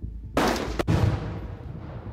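A Tannerite explosive target detonating when shot: one sudden loud blast about a third of a second in, its rumble fading away over about a second. A can and a half of Tannerite.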